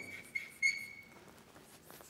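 Chalk squeaking on a blackboard as it writes: a thin, high squeal in three short strokes over the first second or so, the last the longest, with a few faint chalk taps.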